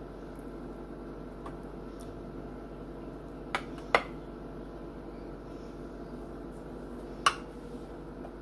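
Metal knife clinking against a glass baking dish while swirling cream cheese topping through brownie batter: three sharp clinks, two close together about halfway through and one near the end, over a steady background hum.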